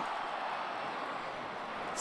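Stadium crowd noise: an even, steady wash from the stands, easing slightly toward the end.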